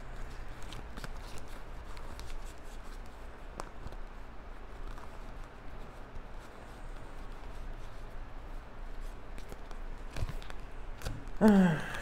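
Tarot cards handled and sorted by hand: faint rustling and light clicks of card edges sliding against each other, over a low steady hum.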